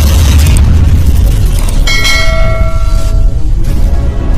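Loud intro-animation sound effects: a deep rumble, with a bell-like chime ringing out about two seconds in and dying away about a second and a half later.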